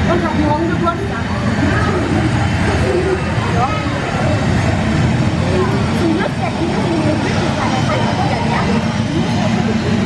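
Recorded jet airliner take-off sound played over loudspeakers as a model plane lifts off, over the steady chatter of a crowd of visitors.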